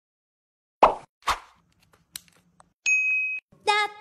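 Two short pops about half a second apart, then a clear high electronic ding lasting about half a second; near the end a sung 'da da da' tune with music begins.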